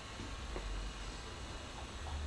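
Quiet room tone: a steady low hum under an even hiss, with a couple of very faint soft sounds.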